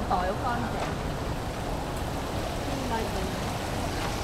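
Busy city street ambience: a steady background hiss with faint snatches of passersby talking, clearest in the first moment.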